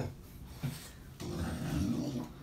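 Chow chow grumbling low, starting about a second in after a quieter moment.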